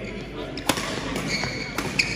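Badminton rackets striking the shuttlecock during a rally: two sharp hits about a second apart, the second near the end.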